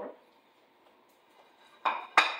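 A plate clatters once as it is set down on a kitchen countertop near the end.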